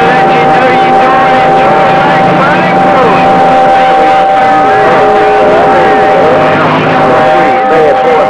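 CB radio receiver on channel 28 picking up crowded long-distance skip. Several steady whistles at different pitches, some starting and stopping partway through, sit over static and garbled voices, the sign of several distant stations transmitting over one another.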